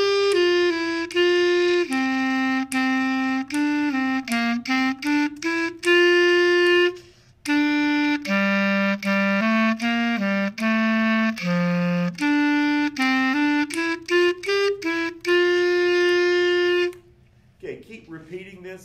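A clarinet playing a simple melody in G major at a moderate tempo, mostly held notes with some quicker stepwise runs and a few low notes. It breaks for a breath about seven seconds in and ends on a long held note about a second before the end.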